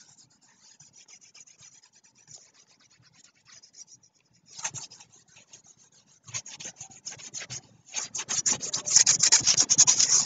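Scratchy rubbing strokes of a stylus scrubbed back and forth across a drawing tablet, erasing handwritten annotations. Faint and sparse at first, a short burst about halfway, then fast dense strokes that grow loudest near the end.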